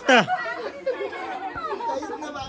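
A group of people talking and calling out over one another, with a loud, high voice rising and falling in pitch right at the start.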